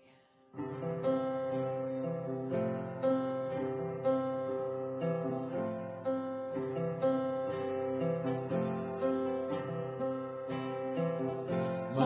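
Live worship band playing a slow instrumental song introduction on keyboard and acoustic guitar. It starts about half a second in, with chords struck at an even pace of about two a second, and singing begins at the very end.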